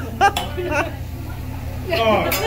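Voices of people around a dining table: a short burst of voice in the first second, then quieter background chatter over a steady low hum.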